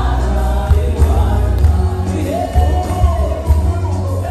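Live gospel worship music: a band with heavy bass under many voices singing together, the audience singing along.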